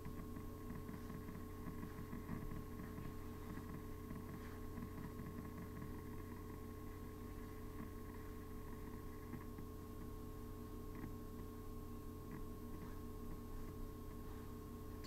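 Quiet room tone: a steady low electrical hum, with faint scattered rustles.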